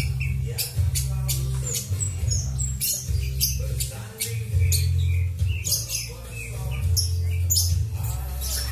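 Background music with a steady bass line. Over it come many short, high chirps and squawks from caged birds, in quick irregular bursts throughout.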